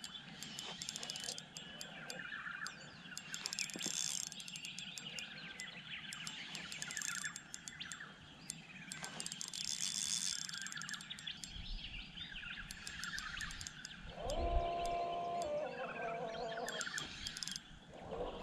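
Several birds chirping and calling in quick, overlapping short notes. A lower, steadier call-like sound comes in for about three seconds near the end.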